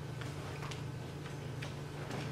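A few faint, irregular clicks from a Bible and a wooden lectern being handled, over a steady low hum.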